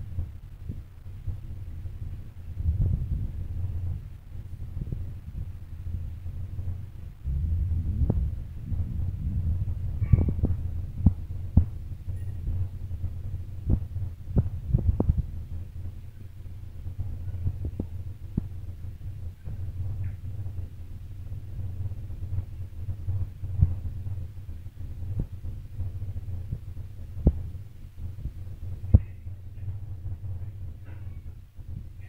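A low steady hum with irregular soft thumps and scattered sharp clicks.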